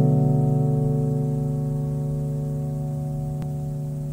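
Music: a single sustained keyboard chord, struck just before and slowly dying away, with no vocals.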